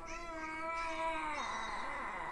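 A young child's drawn-out, steady vocal sound, a held hum or "uhhh" on one pitch, lasting about a second and a half before it trails off.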